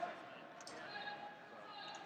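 Faint, indistinct background chatter of people talking, with a brief click about two-thirds of a second in.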